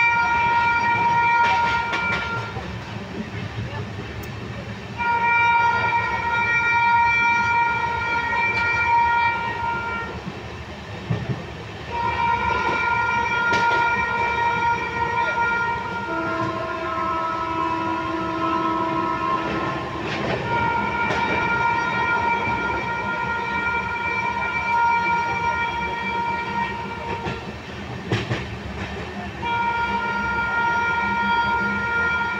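Train horn blowing long blasts of several seconds each, again and again, with one lower-pitched blast around the middle. Underneath runs the steady rumble and clatter of a moving train heard from inside a coach, with a few sharp knocks.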